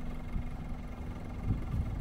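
Quad bike (ATV) engine running steadily in low-range gear, moving slowly over a boggy track, with a short low knock about one and a half seconds in.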